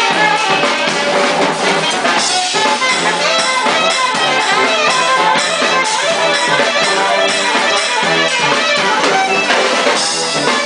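Live funk band playing an instrumental passage, with saxophone and trombone over electric guitar and drum kit.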